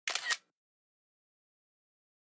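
A brief double click, two sharp snaps within about half a second right at the start.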